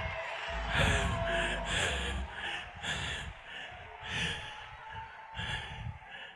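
A man breathing hard and fast close to a microphone, each breath a short rush of air, over faint background music.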